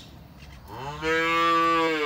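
Black-and-white dairy cow mooing: one long, steady low that swells in about halfway through and is still going at the end.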